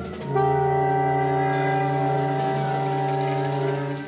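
Large jazz ensemble sounding a sustained chord that comes in about a third of a second in and is held steadily, thinning out near the end.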